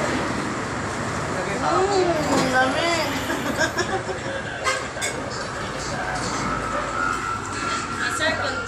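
Indistinct talk around a dining table over a steady background din, with a couple of sharp clinks of cutlery on plates about halfway through.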